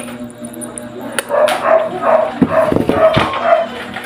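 A dog barking in a quick run of about six short barks, roughly three a second, with a few dull knocks among them.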